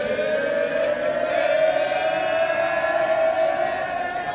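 Voices holding one long chanted note for about four seconds, its pitch creeping slowly upward, over a street crowd.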